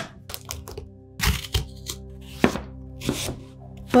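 A large kitchen knife chopping through raw pumpkin and knocking on a plastic cutting board, in a handful of irregularly spaced chops.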